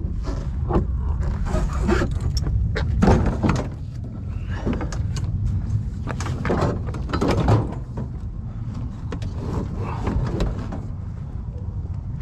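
Knocks, clanks and scrapes of a wooden-bed cart with a steel-tube frame being heaved up and shoved onto a loaded pickup truck bed, with the sharpest knocks about three seconds in and again past the middle.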